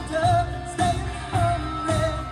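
A pop song with a sung vocal line over a steady beat of just under two beats a second; the voice holds wavering notes.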